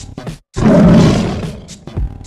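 A tiger roar sound effect: one loud, rough roar starting about half a second in and fading away over about a second, between short beat-like hits of background music.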